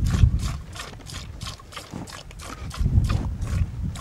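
Goats close to the microphone: a quick, even run of crisp clicks, about five or six a second, with low rumbling near the start and again about three seconds in.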